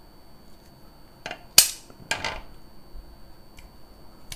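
Skin-on pork belly popping on a hot grill pan: a few sharp cracks, the loudest about a second and a half in, with a smaller one just after two seconds.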